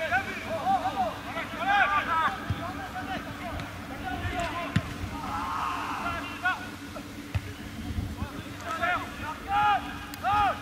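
Distant shouts and calls from football players on the pitch, short and unintelligible, coming in bursts, over a steady low rumble.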